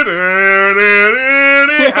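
A man's voice imitating a sound from a rap track's beat with one long sung tone. It dips in pitch at the start, holds, then steps up a little about a second in, and ends in a short laugh.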